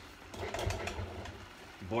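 Tomato sauce boiling in a stainless saucepan on a gas burner: a faint, rapid popping and spattering of bubbles.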